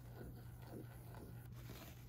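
Quiet room tone: a steady low hum with faint rustles and small clicks.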